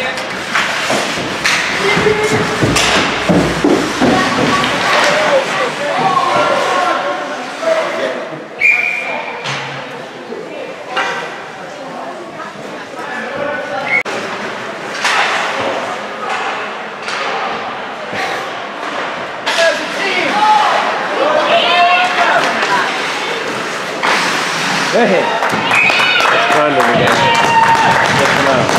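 Ice hockey play in an echoing rink: repeated sharp knocks and thuds of puck and sticks striking the ice, boards and glass, with distant shouts from players and spectators, busier near the end.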